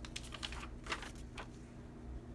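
Old paper documents being handled: a quick series of about six light clicks and rustles as a sheet is picked up off a pile, stopping about a second and a half in.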